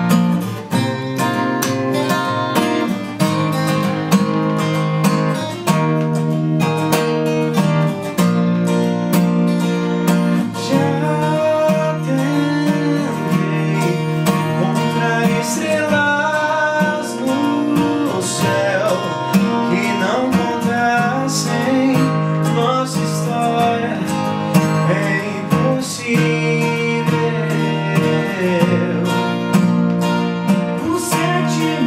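Two steel-string acoustic guitars strumming and picking chords, with male singing joining partway through.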